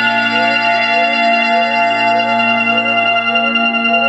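Electronic keyboard or synthesizer music: a held organ-like chord with a short rising glide repeating about two and a half times a second.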